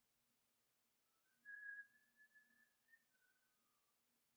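Near silence with a faint whistle: a few soft held notes from about a second in until near the end, the last one dropping lower.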